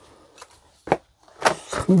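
A few short, sharp knocks and clicks, the loudest about a second in, from footsteps on broken wood and rubble. A man's voice starts near the end.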